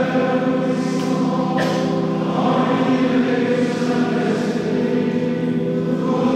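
Church choir singing long, held chords.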